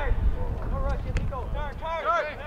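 Several voices calling out across an outdoor soccer field in short shouts, over a low wind rumble on the microphone.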